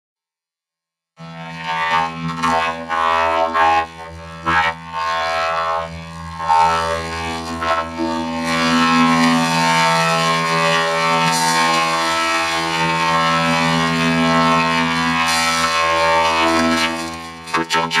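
A TV commercial's soundtrack run through a robot voice effect, starting about a second in: the music, voices and effects are flattened into one held, droning pitch with many overtones, pulsing louder and softer with the original sound.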